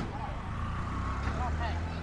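Outdoor street ambience: a steady low rumble with faint distant voices.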